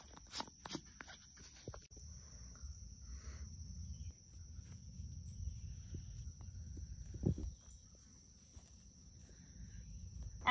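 Hands handling a plastic jar of rooting hormone, with a few sharp clicks, then pressing a rose cutting into loose mulched soil: low rustling handling noise with one thump about seven seconds in.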